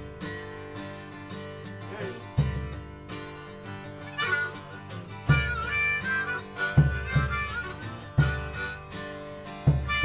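Acoustic band music: a Gibson acoustic guitar strums chords while a floor tom is struck with a mallet every second or so. About four seconds in, a harmonica comes in, playing bending blues lines over them.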